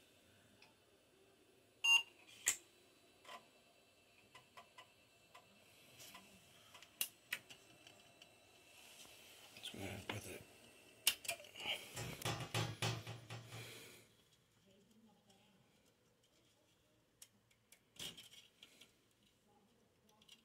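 Scattered clicks and knocks, the loudest about two seconds in, from hands working on a 386 desktop PC to put its turbo switch back in the right way round.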